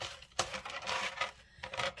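Small metal jewelry clinking and rattling against a plastic tray as pieces are picked up and handled, with a few sharp clicks: one about half a second in and several near the end.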